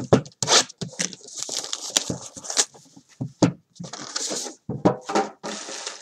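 Trading-card boxes being shifted and handled: an irregular run of knocks, taps and rustles of cardboard and packaging.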